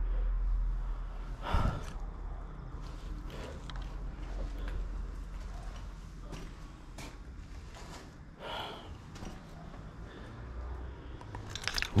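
Faint handling and footstep noises: scattered soft knocks and rustles over a low steady rumble, the sharpest knock about one and a half seconds in.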